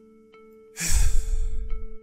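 A man's heavy sigh: one long breath out, starting a little less than a second in and lasting about a second. Soft background music with held tones plays underneath.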